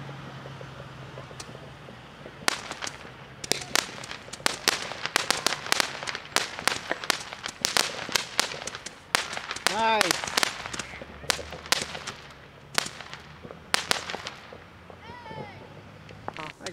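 Aerial fireworks going off: a rapid, irregular run of sharp pops and crackles that starts a couple of seconds in and lasts about eleven seconds before thinning out.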